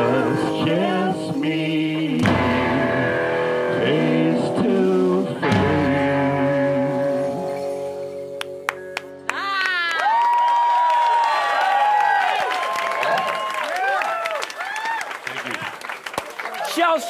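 Two-piece rock band of electric guitar, drums and two singing voices playing loud, with drum hits and sustained sung notes. The song ends with a ring-out about nine seconds in, and then many voices whoop and cheer.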